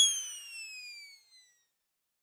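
Electronic whistle-like sound effect: a pitched tone that has just shot upward glides slowly down in pitch and fades out within about a second and a half.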